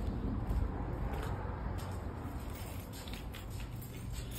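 Footsteps on a concrete walkway, faint and irregular, over a low steady rumble from the phone being carried while walking.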